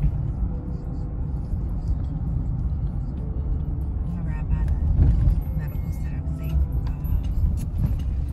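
Steady low road and engine rumble heard from inside a moving car, with brief quiet talking in the cabin partway through.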